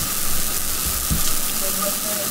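Steady hiss of background recording noise, with soft low rumbles underneath, in a pause between spoken sentences.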